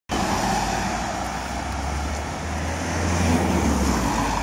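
Road traffic noise from a vehicle passing on the road alongside, growing louder to a peak about three seconds in.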